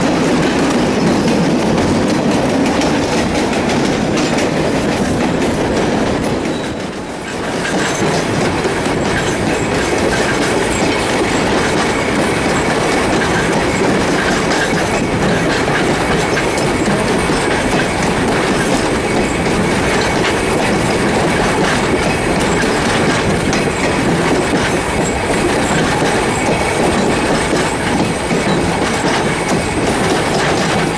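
Steam-hauled passenger train running along the line, heard from an open coach window close behind the locomotive: a steady rumble and clatter of wheels on the rails, with a brief dip in loudness about seven seconds in. A faint high squeal from the wheels runs under it from about a third of the way in.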